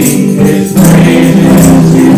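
Live worship song: several voices singing together over a strummed acoustic guitar.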